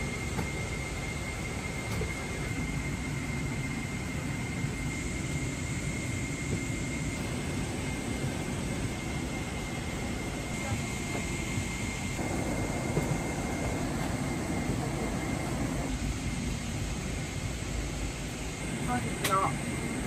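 Steady airliner cabin noise inside a Boeing 777-300ER: an even rumbling hiss with a thin, steady high whine running through it. A sharp click comes near the end.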